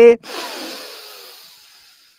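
A deep inhale through the nose right up against the microphone, a breathy sniff that starts just after a spoken count and fades away over about a second and a half.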